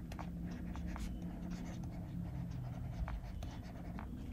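Stylus scratching and tapping faintly on a drawing tablet as a word is handwritten, over a steady low hum.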